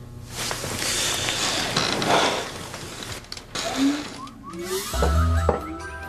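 Sound-effect score for a magic moment: a noisy, rattling swell for about three and a half seconds, then short rising glides in pitch and a low music chord that comes in about five seconds in.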